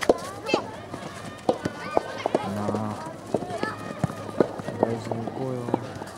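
Children's voices calling and shouting across a soccer field, with scattered sharp knocks of the ball being kicked.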